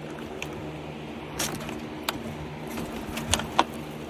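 A carabiner and the metal hatch latch of a wire-mesh enclosure clicking and rattling as they are worked open; the latch is a little jammed. There are a few sharp clicks, the two loudest near the end, over the steady hum of electric fans running.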